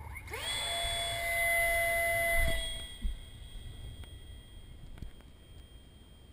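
Electric ducted fan of a HobbyKing Stinger 64 RC jet spooling up with a rising whine to a steady high-pitched full-throttle whine, which drops away after about two seconds as the jet leaves and then fades. A single thump about three seconds in.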